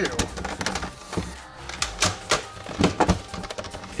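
Irregular clicks and knocks of hard plastic blaster parts being handled and pressed together as a Nerf Sledgefire is fitted to its 3D-printed stock and barrel.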